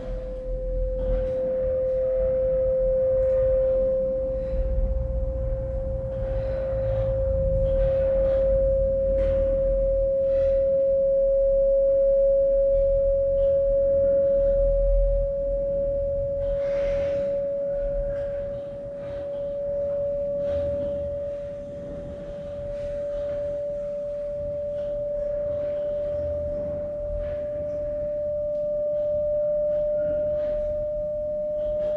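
A single steady pure tone, held without a break and gliding very slowly upward in pitch, over a low rumble with a few faint soft knocks and rustles.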